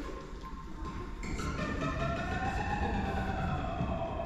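Ambient electronic soundscape of a light installation: sustained tones over a low rumble, with gliding tones coming in about a second in that slowly rise and then fall.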